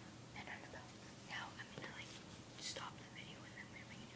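Faint whispering in short, hushed bursts.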